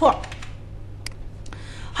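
A few isolated clicks from computer controls as the on-screen chart drawings are cleared, one standing out about a second in, over a steady low electrical hum.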